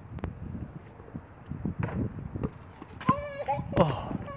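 Rumbling noise and a few knocks on a phone microphone, then a child's high-pitched voice calling out briefly about three seconds in.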